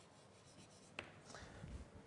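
Faint chalk writing on a blackboard: one sharp tap about halfway through, then light scratching.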